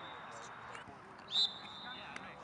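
Referee's whistle: a brief chirp right at the start, then a short, louder single-pitched blast about one and a half seconds in, as a free kick is set to be taken.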